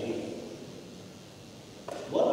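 A pause in a man's amplified speech: the end of his last words fades out in the hall's echo to a low room hum, and a brief click comes just before he speaks again.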